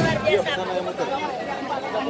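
Crowd chatter: many people talking at once close by, their voices overlapping with no one voice standing out.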